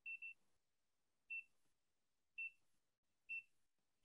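Faint short electronic beeps from a digital multimeter as its selector dial is turned through the settings: two quick beeps, then three single beeps about a second apart.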